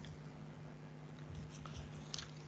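Faint room tone with a steady low hum, and a few weak ticks.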